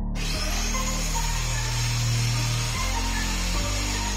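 A handheld corded electric power tool runs steadily on a plywood board, with a constant hiss, over background music.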